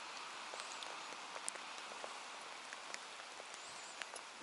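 Steady light rain falling on the water's surface: an even hiss with scattered single drop ticks.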